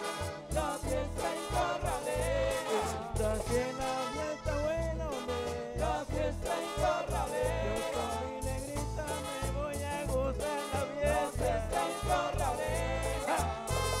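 Live accordion-led Colombian Caribbean band music played on stage, with percussion keeping a steady, evenly repeating bass beat under a wavering melody and voices.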